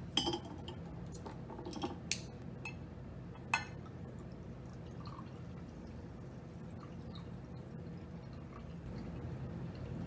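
A glass soda bottle being opened and handled, with a few sharp clicks and clinks in the first four seconds, then soda being poured from the bottle into a glass in a faint, steady trickle.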